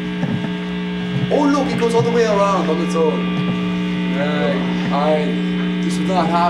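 Steady electrical hum from the band's amplified rig, a buzz with many overtones, while the electric guitar is not being played. Indistinct talking comes through it about a second in and again near the end.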